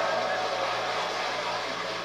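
Studio audience applauding, heard through a TV's speaker, the clapping tapering off slightly toward the end.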